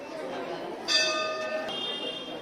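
A temple bell struck twice, about a second in and again just under a second later. Each strike rings on and fades, the second with a higher set of tones, over background voices.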